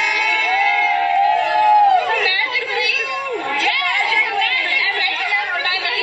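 Fast, high-pitched, unintelligible chatter of a woman's voice, sped up, with the pitch jumping and bending rapidly.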